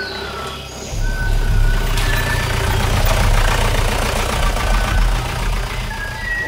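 A steady low engine rumble that comes in about a second in, with a noisy hiss over it.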